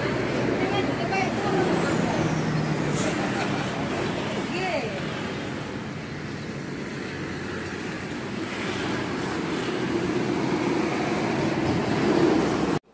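Steady road traffic noise from passing vehicles, with faint voices underneath.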